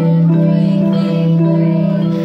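Electronic keyboard played by two players at once, an adult and a child, steady held notes with a low tone sustained under higher notes that change every half second or so.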